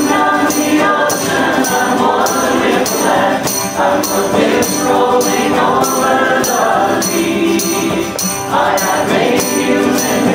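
Live folk band playing: acoustic guitar and frame drum with several voices singing together, and a tambourine shaken in a steady beat about twice a second.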